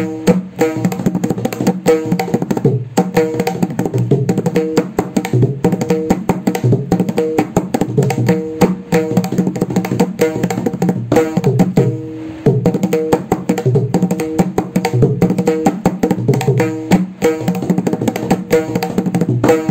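Mridangam played solo: rapid finger and palm strokes on the tuned right head, ringing at a steady pitch, mixed with deep bass strokes on the left head in a fast, dense rhythm, broken by a brief pause about twelve seconds in.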